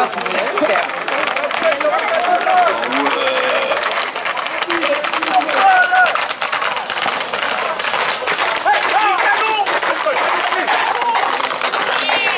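Crowd of spectators shouting and calling while Camargue horses' hooves clatter on tarmac and people run alongside, giving a dense run of sharp clicks under the voices.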